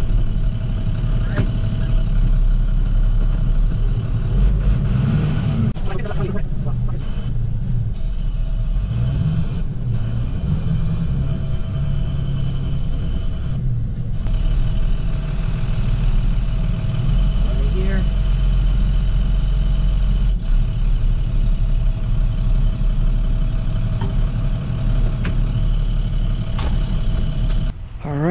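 Roll-off truck's diesel engine running, heard from inside the cab: a steady heavy rumble with a steady whine over it, and a few short knocks and clunks.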